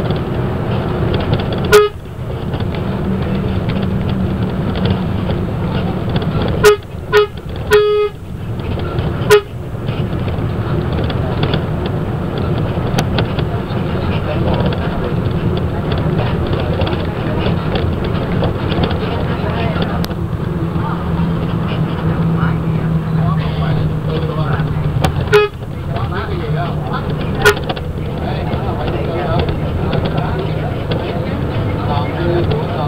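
Steady engine and road noise inside a moving bus, broken by short horn toots: one about two seconds in, four in quick succession between about seven and nine and a half seconds, and two more near the end.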